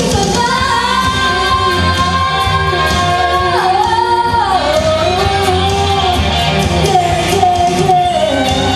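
A woman singing live into a microphone over a country-pop band accompaniment. She holds one long high note, which slides down about three and a half seconds in into lower sustained notes.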